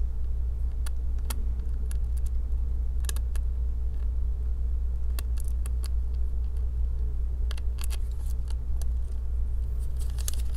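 Small screwdriver clicking and scraping against a screw and metal bracket while a laptop M.2 SSD is fastened back into its slot: a dozen or so sharp, scattered ticks. A steady low hum runs underneath.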